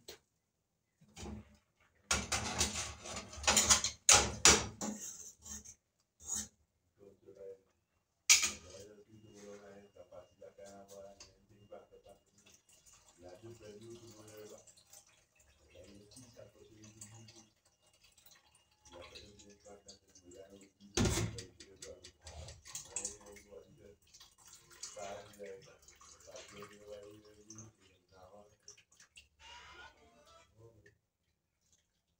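Kitchen work: water running and splashing at a sink for a few seconds near the start, then dishes and a pot handled, with one sharp knock about two-thirds of the way through.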